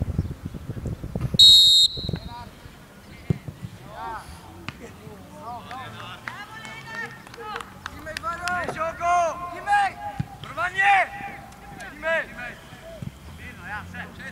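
Referee's whistle blown once, short and loud, about a second and a half in, the signal for the free kick to be taken.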